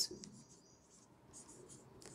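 A marker pen writing on a whiteboard: faint short strokes with small gaps between them.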